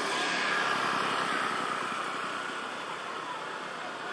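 Steady outdoor background noise with no distinct events, easing slightly toward the end.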